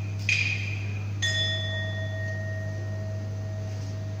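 A small metal percussion instrument of a tuồng (Vietnamese classical opera) ensemble struck twice: first a short ring, then about a second later a clear, high ringing tone that fades slowly. A steady low hum runs underneath.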